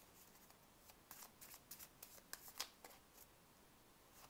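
A deck of tarot cards being shuffled and split by hand, heard as faint, scattered flicks and soft slides of card edges.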